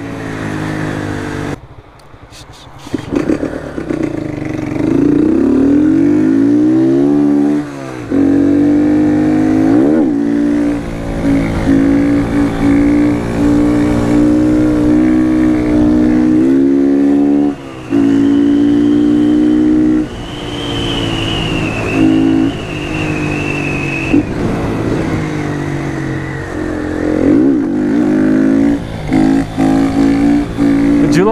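Motorcycle engine under throttle, revs held high and steady for several seconds at a time. About two seconds in it drops off briefly, then climbs again. There are short dips and rises in pitch near the middle and the end.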